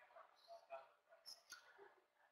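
Near silence, with a couple of very faint ticks.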